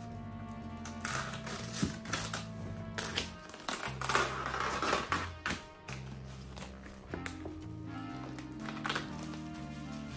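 Background music with a steady bass line. Over it, duct tape is ripped off a package in several short tearing pulls, with crinkling as the removed tape is scrunched up.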